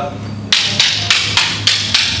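Two wooden fighting sticks clacking against each other in a single stick weave drill: sharp, even strikes at about three a second, starting about half a second in.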